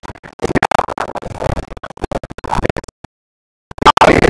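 Choppy, breaking-up live-stream audio: bursts of voice and music fragments cut up by rapid crackling clicks, then the sound cuts out completely for most of a second near the end.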